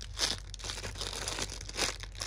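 Thin clear plastic wrapping crinkling in a few short bursts as a hand grips and presses a bagged foam bear squishy toy; the loudest crinkle comes near the end.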